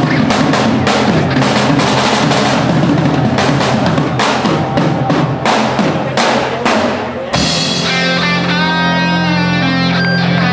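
Live rock band: a drum kit played hard with rapid bass drum and snare hits for about seven seconds, then the drumming stops and amplified electric guitar takes over with sustained, bending notes over a held low note.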